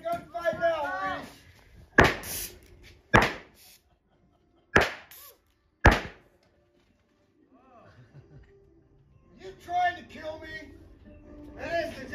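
Four gunshots from blank-firing revolvers in a staged gunfight, spaced about a second apart, each a single sharp crack.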